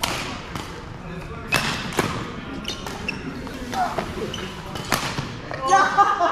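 Badminton rackets striking a shuttlecock in a fast doubles rally: several sharp, echoing hits spaced irregularly across the few seconds, with players' shoes squeaking on the court floor between them.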